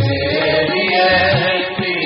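Sikh devotional hymn (kirtan) being chanted, with voices holding long wavering lines over steady sustained accompaniment tones and a few soft low beats.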